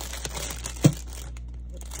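Crinkling of plastic wrapping and handling noise, with one short thump a little under a second in.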